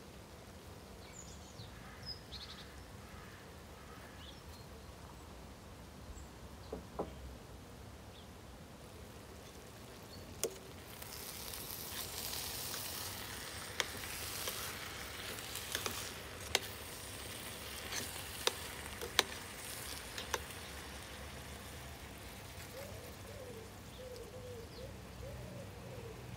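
Chopped bell peppers and vegetables frying in a stainless steel pot, a soft sizzle that grows louder about ten seconds in as they are stirred, with a spoon clicking against the pot now and then.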